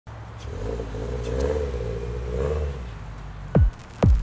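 Car engine running, its pitch wavering up and down with light throttle, then a single deep bass hit with a falling pitch about three and a half seconds in.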